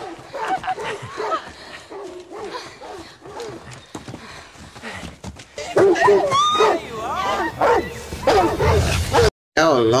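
TV drama soundtrack: dogs barking and yelping, mixed with voices, louder in the second half.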